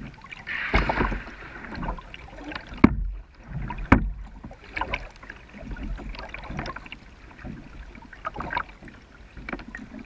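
Kayak paddling in calm water: the paddle blades dip and splash, and water drips in irregular bursts. Two sharp knocks, about three and four seconds in, are the loudest sounds.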